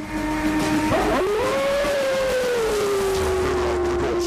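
A wolf howl sound effect: one long call that rises about a second in and then slowly falls in pitch, over a low rumble and a steady hum.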